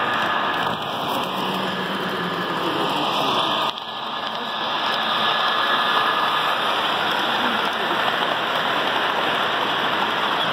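Model freight train rolling past close by on layout track, its wheels on the rails making a steady rushing noise that dips briefly a few seconds in and then grows a little louder as the locomotive and cars pass.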